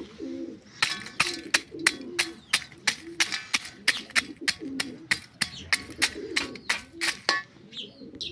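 A small hammer striking lumps of charcoal in an enamel pot, crushing them, with sharp blows about three or four a second from about a second in until shortly before the end. Pigeons coo in the background.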